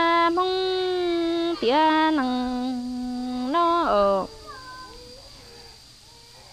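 A woman singing Hmong kwv txhiaj (sung poetry): long held notes that slide at their ends, in a few phrases, with the last one falling off and dying away about four seconds in.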